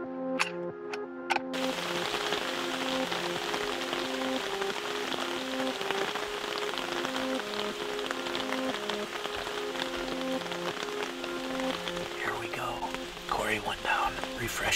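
Background music of slow, held notes over a steady hiss of rain falling on the fabric of a tent blind; the rain sound starts suddenly about a second and a half in.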